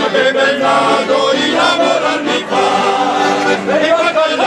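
A group of men singing together in chorus, with accordions playing along in sustained chords.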